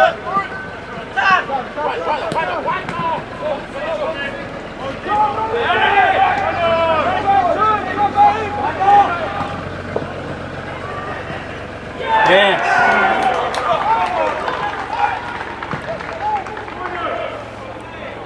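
Players' voices calling and shouting across an outdoor football pitch during play. There are two main bursts of shouting, about a third of the way in and again past the middle, with scattered calls over a steady background hum.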